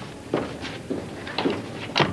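A desk telephone being handled: a few short clicks and knocks, with the loudest clunk near the end as the handset is set down on its base.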